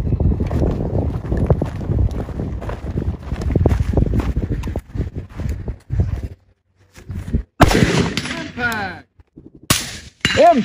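Semi-automatic rifle shots on a range: a ragged rumble with many small knocks for the first half, then two sharp, loud shots, one about two-thirds of the way in and one just before the end.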